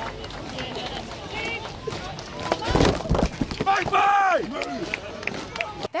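Marching Queen's Guard soldiers' boots and outdoor crowd noise. A loud scuffle with exclamations comes a little under three seconds in as a guardsman runs into a tourist. A soldier's shout of "make way" follows about four seconds in.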